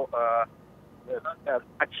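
Only speech: a man talking over a telephone line, with a pause of about half a second.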